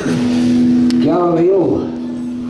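An amplified guitar note held steady and unbroken, starting suddenly. About a second in, a short bending, voice-like sound rises over it.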